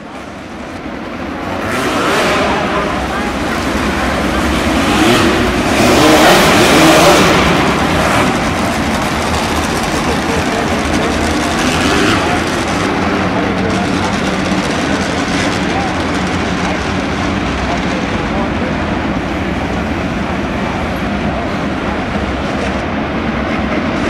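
A pack of midget race car engines running at low pace speed behind the pace truck, fading in over the first two seconds and swelling loudest around six seconds in before settling to a steady drone.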